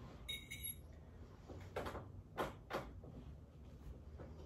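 A metal spoon clinking and scraping in a bowl of oatmeal as a spoonful is scooped: a short high ringing clink about a third of a second in, then a few soft scrapes.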